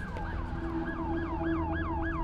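Emergency vehicle siren in a fast yelp, each cycle a quick falling sweep repeating about four times a second, over a steady low rumble.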